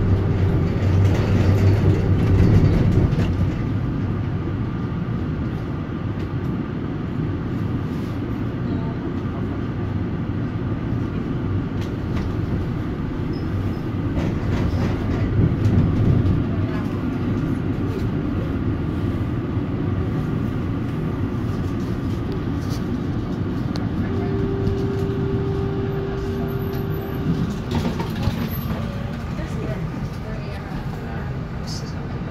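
Inside a 1987 Valmet-Strömberg MLNRV2 thyristor-controlled articulated tram running on street track: a steady rumble of wheels and running gear. A steady hum comes in at the start and again for a few seconds about 24 seconds in. The sound eases near the end as the tram comes to a stop.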